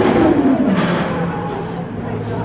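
Funtime drop tower's gondola dropping and braking: a loud whir that falls steadily in pitch over the first second, then settles into a steady low hum as the brakes slow it.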